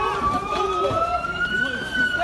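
Police siren in a slow wail, its pitch rising steadily and turning to fall near the end, over raised voices shouting.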